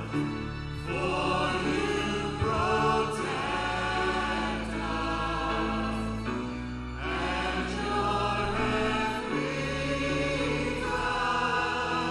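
Gospel worship song: voices singing together in phrases with short breaks, over keyboard accompaniment with sustained low bass notes.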